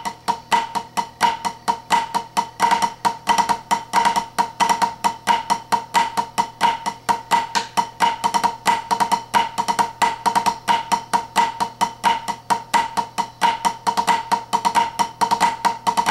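Drumsticks on a tunable practice pad playing a snare rudiment exercise: groups of flam accents alternating with cheese, flam drags and drags on the third beat. It is a steady, unbroken stream of quick, sharp strokes, with a high ring from the tensioned head.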